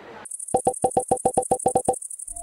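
Synthesized logo jingle: a rapid train of short electronic beeps, about eight a second, over a steady high buzz.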